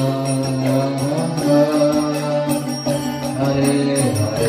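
Kirtan music: a harmonium sustains chords under a chanted Hindu devotional mantra.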